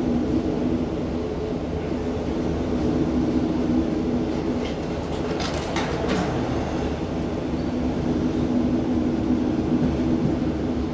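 Diesel passenger train heard from on board while running along the line: a steady engine drone over wheel and track rumble, with a brief run of sharp clicks about five to six seconds in.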